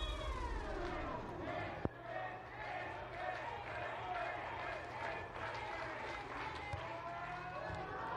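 Indistinct voices over the arena's background sound, with a single sharp knock just under two seconds in.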